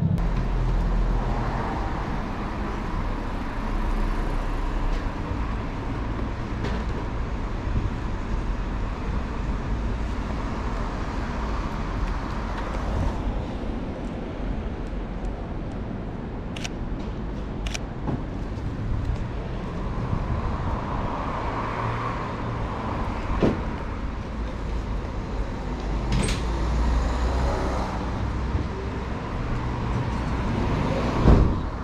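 City street traffic: a steady rumble of cars and buses on the road. Around the middle come two short sharp clicks about a second apart, the shutter of a Sony A7 III camera taking pictures.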